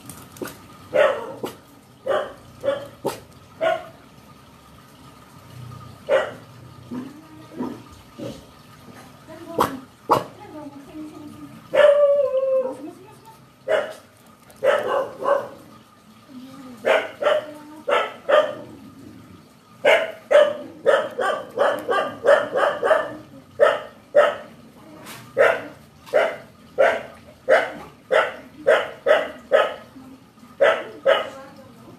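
Dog barking repeatedly: scattered barks at first, then a fast run of barks at about two a second through the second half.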